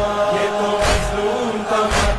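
Men's voices chanting a noha for Imam Husayn, with a heavy chest-beating thud (matam) about once a second, twice in these two seconds.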